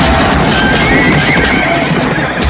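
A horse whinnying over loud, dense music: a wavering high call from about half a second in, lasting just over a second.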